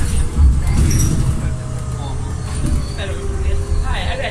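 A city bus driving, heard from inside the passenger cabin: a steady low rumble with a faint whine running through it.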